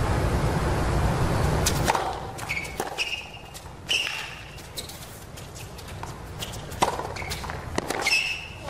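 Steady crowd murmur. About two seconds in it gives way to the quiet of a hard tennis court, with sharp knocks of a tennis ball bouncing and being struck, short shoe squeaks, and one loud racket crack near the end as play starts.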